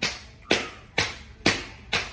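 Sharp taps repeating evenly about twice a second, each dying away quickly.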